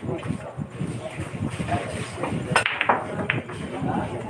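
Pool cue striking the cue ball and the ball then clicking into other billiard balls: three sharp clicks between about two and a half and three and a half seconds in, over a murmur of voices.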